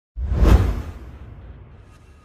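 A whoosh sound effect: a sudden swell of rushing noise with a deep low end that peaks about half a second in and then fades away.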